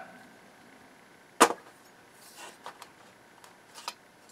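A finned server heatsink set down into an aluminium chassis: one sharp metallic knock about a second and a half in, followed by a few faint clicks and a brief scrape as it is settled into place.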